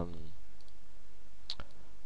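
A sharp computer mouse click about one and a half seconds in, with a fainter click just after, over a steady low hum.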